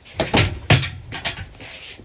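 Movement sounds of a jab-cross thrown into the air: a few sharp swishes and scuffs of clothing and bare feet on a foam mat in the first second, the loudest about three-quarters of a second in, then a softer rustle.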